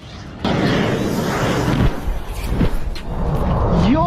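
FIM-92 Stinger shoulder-fired missile launching: a sudden loud blast about half a second in, then a steady rushing noise from the rocket motor as the missile flies off.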